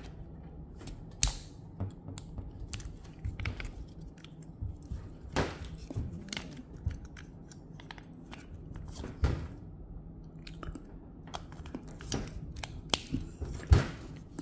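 Irregular small clicks, scrapes and rubbing of a Spec vaporizer's plastic body and cap being handled while its removable cylindrical battery is pulled out and slid back in, with a few sharper clicks standing out.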